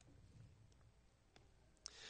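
Near silence: room tone with a few faint, sharp clicks.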